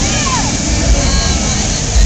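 Outdoor crowd and street noise: a steady roar of background sound with faint distant voices and a low rumble.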